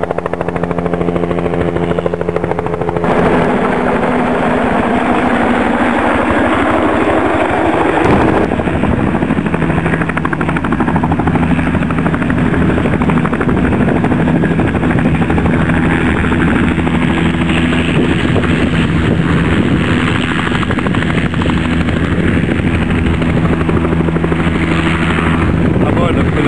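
Radio-controlled scale model helicopter running steadily, its rotor and motor making a loud hum. The hum's pitch shifts about three and eight seconds in as it comes down and settles on the grass with the rotor still turning.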